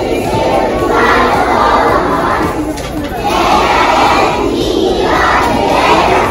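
A large group of young children singing together in unison in phrases a second or two long, a dense mass of voices with no single voice standing out.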